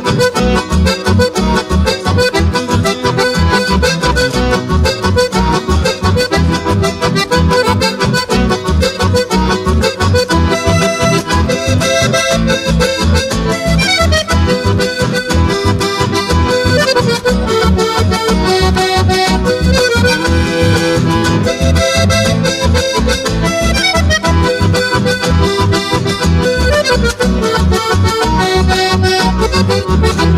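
Instrumental chamamé played live by two button accordions carrying the melody over acoustic guitars and an acoustic bass guitar, with a steady, driving beat.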